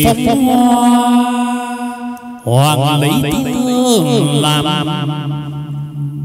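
Chầu văn ritual singing: a voice chanting long, wavering held notes. It breaks off briefly and starts a new melismatic phrase about two and a half seconds in, with plucked-string accompaniment around it.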